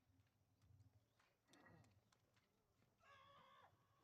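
Near silence, broken by two faint short calls: one falling in pitch about a second and a half in, and a slightly longer, steadier one near the end.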